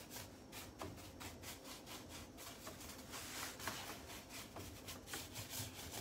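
Faint, quick strokes of a paintbrush brushing over a carved wooden drawer front, working out drips of chalk paint that is almost dry.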